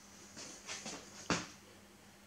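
A few faint ticks, then one sharp click about a second and a half in, from a Hewlett-Packard 3495A relay scanner just after it is switched on.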